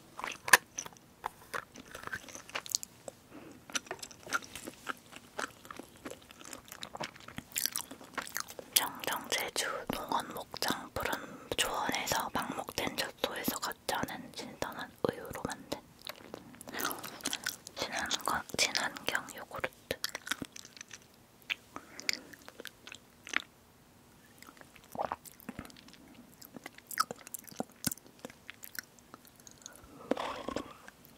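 Close-miked eating sounds: wet chewing and sharp mouth clicks, with a small plastic bottle of drinkable yogurt being handled and sipped near the end.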